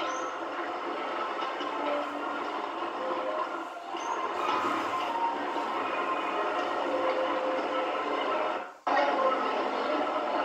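Steady outdoor background noise picked up by a camcorder microphone, with a brief dropout about nine seconds in at an edit.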